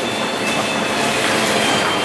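Shopping cart rolling across a tiled supermarket floor, a steady rolling noise from its wheels.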